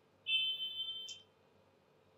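A high-pitched beep lasting about a second, starting a moment in.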